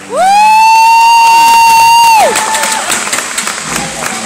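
One loud, high "woo!" cheer close to the microphone, sliding up in pitch, held for about two seconds and then dropping away, followed by audience cheering and clapping at the end of a song.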